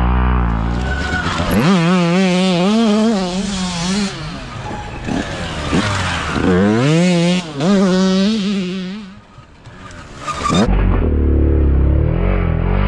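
Several dirt bike engines revving hard as the bikes accelerate through a dirt corner one after another. The pitch rises and falls with throttle and shifts, and loose dirt sprays from the rear tyres. The engines are loud twice in the middle and again near the end, with a brief lull just before.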